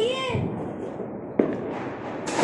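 Firecrackers going off in the background, with a sharp crack about one and a half seconds in.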